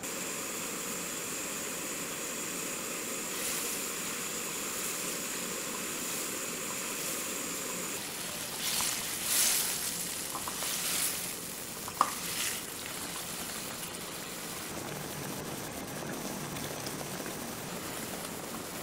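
Tomato sauce boiling and sizzling in a nonstick wok with fried tofu, a steady bubbling hiss. About halfway through come a few seconds of louder sizzling surges as the tofu is turned with a silicone spatula, with one sharp tap of the spatula on the pan near twelve seconds.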